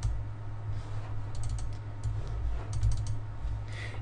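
Faint clicking from computer input while operating the software, in two or three short clusters of quick clicks over a steady low hum.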